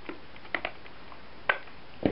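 A few small clicks and taps from a hot glue gun being used on a paper flower: two close together about half a second in, then a single click at about a second and a half.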